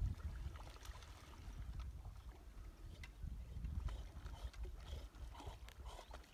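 Wind buffeting the microphone, a faint, uneven low rumble, with a few scattered small clicks.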